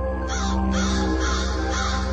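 Crow cawing in a quick series, about two caws a second, starting a quarter second in, over a steady low droning music bed.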